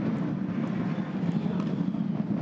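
Ford Mustang Supercar's V8 engine running at low revs as the car moves through the pit lane, a steady low rumble.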